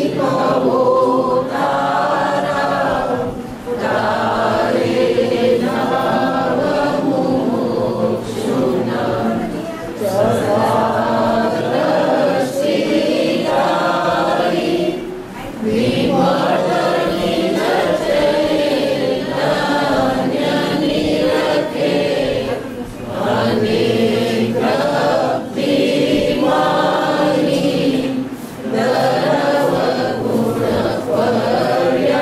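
A group of voices chanting a devotional verse in unison, in sustained phrases a few seconds long with brief breaks between them.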